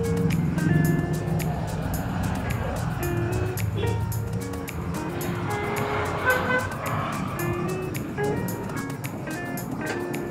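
Background music with a steady beat and a short-note melody.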